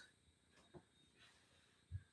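Near silence: room tone, with a faint short low thump near the end.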